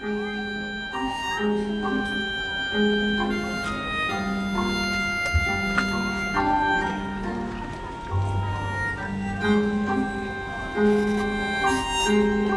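Live band playing the instrumental opening of a gugak-jazz song: a repeating figure of short low notes with higher held notes over it, and a low held bass note coming in about eight seconds in.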